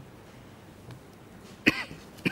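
A person coughing once, sharply, near the end, after a stretch of quiet room tone.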